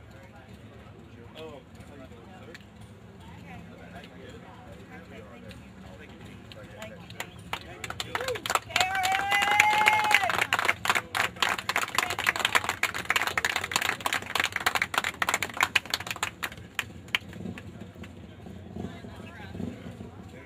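A small group applauding for about eight seconds, starting about eight seconds in, with one voice giving a long held cheer as the clapping begins. Low background chatter comes before it.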